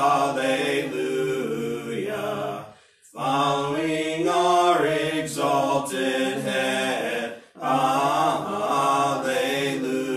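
A hymn being sung, in phrases of about three to four seconds with sustained notes. Each phrase is broken by a brief pause, about three seconds in and again about seven and a half seconds in.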